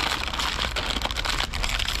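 Plastic crisp packet crinkling and rustling in a steady run of fine crackles as hands pull hard at its sealed top, struggling to tear it open.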